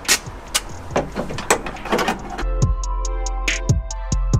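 A few sharp clicks and knocks over background noise, then electronic background music with a steady beat and heavy bass begins a little past halfway.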